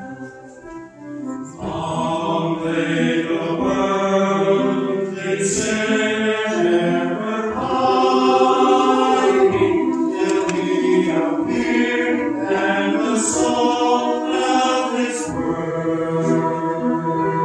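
Mixed choir of men's and women's voices singing a Christmas choral piece, soft at first and then fuller and louder from about two seconds in.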